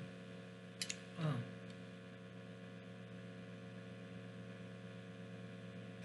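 A quick slurp of stew broth from a spoon about a second in, followed by a short, pleased, falling "oh", then a steady low hum of room noise while she chews.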